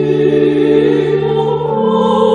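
A children's choir singing sustained chords in a church. Near the end the lowest held part stops while the higher voices carry on.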